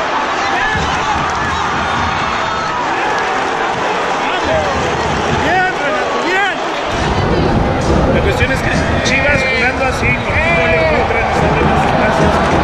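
Football stadium crowd: many fans shouting and chanting over one another, with a man close by yelling about halfway through. The crowd noise grows louder and fuller about seven seconds in.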